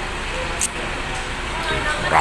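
Indistinct chatter of diners in a busy eatery over a steady low background rumble, with one sharp click a little after the start.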